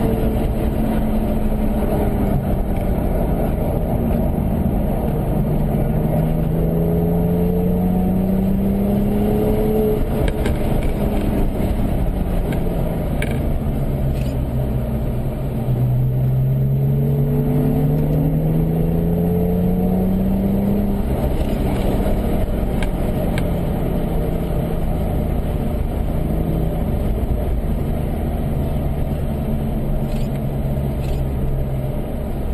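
Porsche engine heard from inside the car at parade-lap pace, its pitch climbing about four seconds in, sinking, then climbing again from about the middle to two-thirds through before levelling off, over a steady rush of road and wind noise.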